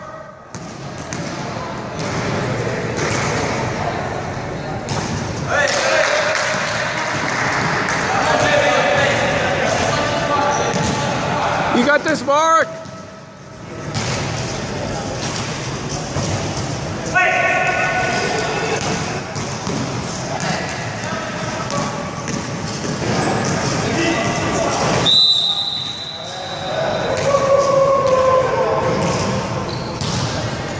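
Voices and shouts of players and spectrators in a large echoing sports hall, with a basketball bouncing on the wooden gym floor. A single short, high whistle blast, the kind a referee's whistle gives, comes about 25 seconds in.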